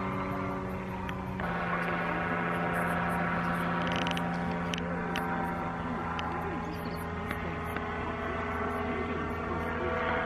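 Paramotor engine of a powered paraglider droning steadily overhead, its note changing abruptly about a second and a half in.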